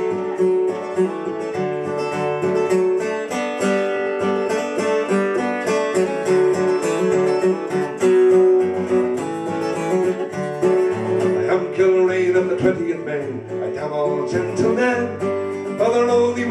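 Steel-string acoustic guitar strummed in a steady rhythm of chords, an instrumental break between verses of a folk song.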